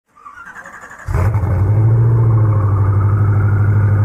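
Car engine sound effect: a faint rising whine, then about a second in a loud engine starts up and runs steadily with an even pulsing beat.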